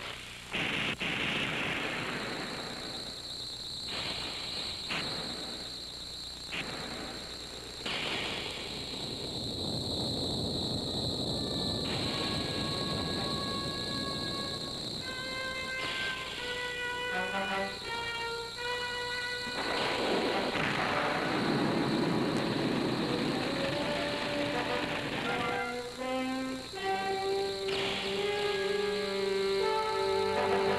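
Film soundtrack: blasts and explosion effects for the first several seconds, then dramatic background music of held notes and quick note runs, broken in the middle by a long swell of rushing noise.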